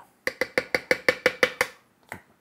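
A metal spoon tapped quickly against the rim of a food processor bowl to knock sour cream off it: about a dozen ringing taps, roughly eight a second, that stop shortly after halfway through.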